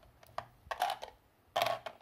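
Plastic building bricks clicking and rattling against each other as small plates are handled and pressed into a round ring on a baseplate: a few short clicks, the loudest about one and a half seconds in.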